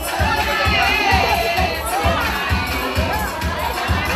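A crowd of women giving high-pitched, wavering cheers and ululation, loudest in the first two seconds, over music with a steady drum beat of about two beats a second.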